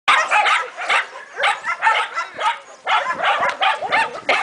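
A dog vocalising in a rapid string of short, pitched barks and whines, about two a second.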